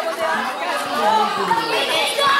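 Crowd of spectators chattering and calling out, several voices overlapping at once.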